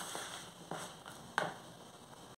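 Metal spoon stirring dry sour cassava starch and egg in a plastic bowl: soft scraping, with two sharper clicks of the spoon against the bowl.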